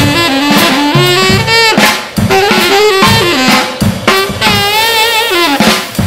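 Tenor saxophone playing a melody over a drum kit, with a long held note with vibrato a little past the middle.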